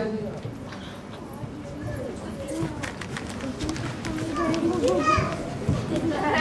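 Children's voices chattering and calling out indistinctly over a general murmur of people in the room.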